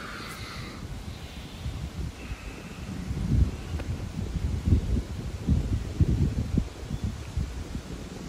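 Wind buffeting the microphone: an uneven low rumble in gusts, growing stronger from about three seconds in.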